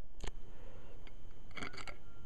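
Light handling noise of fingers on a subwoofer's metal input terminals: a sharp click just after the start, soft scraping, and a few small clicks near the end.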